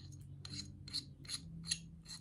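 A handful of light, faint clicks spread through two seconds from a small pistol-mounted flashlight attachment being handled and its switch pressed, with its light already working.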